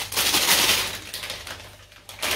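Clear plastic protective bag crinkling as a camera body is pulled out of it, loudest in the first second and dying away before the end.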